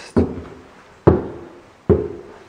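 Three heavy footsteps on a bare, uncarpeted floor at walking pace, each thud ringing briefly in an empty room.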